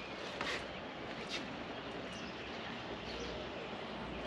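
Outdoor backyard ambience: a steady faint background hiss with a few brief bird chirps in the first half.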